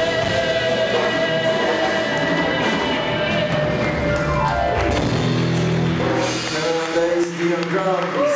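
Live rock band of acoustic and electric guitars, bass and drums holding a sustained chord. About halfway through a note slides down in pitch into a lower held chord as the song winds down, and talking starts near the end.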